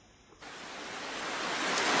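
Rain sound effect fading in: after a brief silence, a steady hiss of rainfall starts about half a second in and grows gradually louder.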